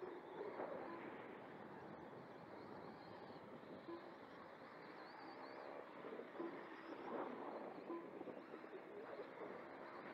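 Faint whine of electric RC motorcycles racing around a dirt oval, with some rising and falling whines high up. A few short steady tones sound from about four seconds in.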